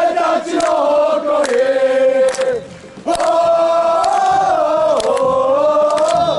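A crowd of football supporters singing a victory chant in unison, in two long phrases with a short break about halfway through, with handclaps over the singing.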